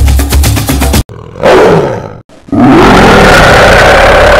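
Music with a steady beat cuts off about a second in. A tiger roar follows, then after a brief break a second, long roar that keeps going.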